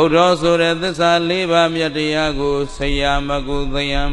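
A Buddhist monk chanting in a steady, drawn-out melody on long held notes. The chant comes in suddenly after a quiet pause.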